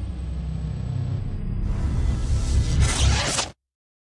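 Outro logo sting: heavy bass with a whooshing hiss that swells in the second half, then cuts off suddenly about three and a half seconds in.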